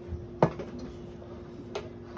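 A sharp knock of a glass measuring cup on the kitchen counter about half a second in, then a lighter tap about a second later, over a faint steady hum.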